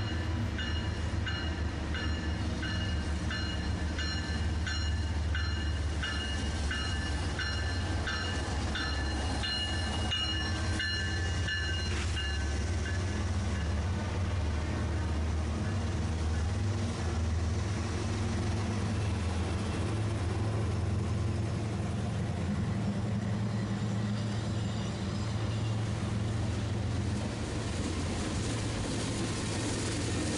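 Union Pacific GE diesel freight locomotives passing close by, with a heavy, steady engine rumble. A bell rings at a little over one strike a second for about the first twelve seconds, then stops, and the freight cars roll past behind.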